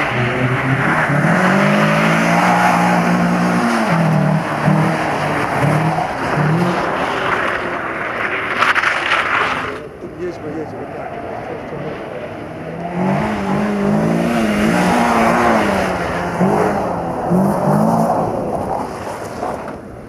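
Renault Clio rally car's engine revving hard, its pitch rising and falling again and again as the car is thrown through a tight course. The sound drops quieter for a few seconds about halfway through, then the revving returns.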